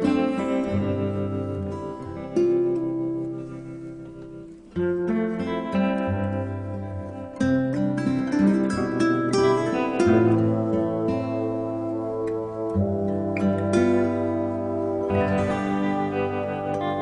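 Background music: a slow, gentle instrumental led by plucked strings over held low notes.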